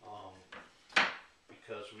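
A wooden shutter louver set down into the wooden shutter frame: one sharp wooden clack about a second in.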